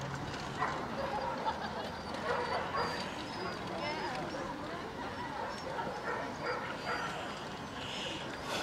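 Indistinct chatter of people around an outdoor show ring, with dogs barking now and then.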